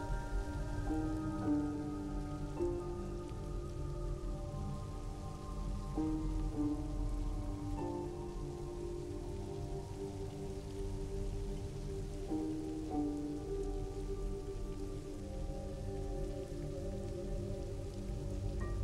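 Steady rain under a slow film score of held notes that move to a new pitch every few seconds.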